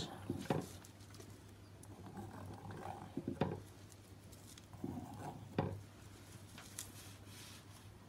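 Faint handling noises: three light, sharp knocks spread through, with soft rubbing between them, from a wooden stirring stick being worked and set down on a plastic-sheeted work table.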